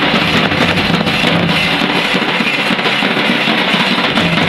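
Large nagara kettle drums and a barrel drum beaten with sticks together in a loud, dense folk rhythm.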